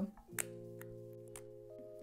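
Soft background music holding a chord, with a sharp click about a third of a second in and a few faint clicks after: a Lancôme lipstick's cap being pulled off its case.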